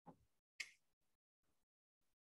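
A single sharp click about half a second in, just after a faint low thump; otherwise near silence.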